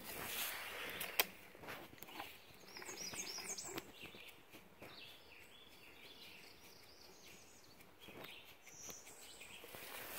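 Faint outdoor ambience with small birds chirping, in short high calls between about three and four seconds in and again near the end. A single sharp click about a second in.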